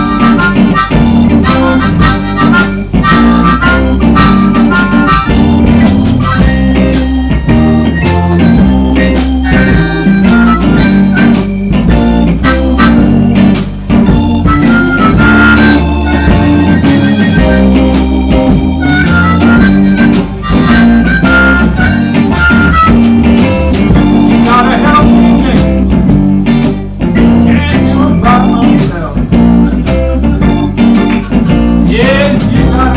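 Live blues band playing, led by an amplified harmonica solo with the harp cupped against a vocal microphone, over electric bass and a drum kit. The harmonica drops out near the end while the band plays on.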